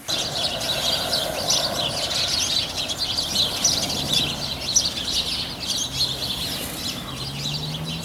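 Many small birds chirping continuously outdoors, with a faint low hum in the second half.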